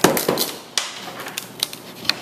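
Wooden knocks and clatter as old, oil-soaked boat bottom planks are pried and pulled off the frames: one sharp knock at the start, then a few lighter knocks and scraping.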